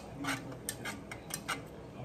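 Wire whisk stirring sauce in a saucepan, its wires clicking against the pan several times at an uneven pace.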